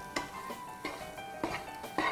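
A utensil scraping and knocking against a frying pan as food is stirred, about five short strokes, over soft background music.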